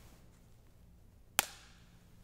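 A single sharp snap about one and a half seconds in: a large communion wafer (priest's host) being broken in two at the fraction of the Eucharist.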